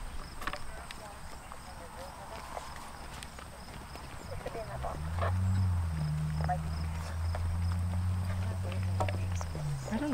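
Horses trotting on a sand arena, their hoofbeats soft and scattered, with voices in the background. About halfway in, a steady low hum comes in and holds.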